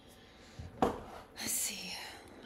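A woman whispering briefly under her breath, starting with a short sharp sound a little under a second in.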